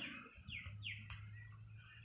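Faint bird chirping: two short chirps that fall in pitch, about half a second and about a second in, over a low steady hum.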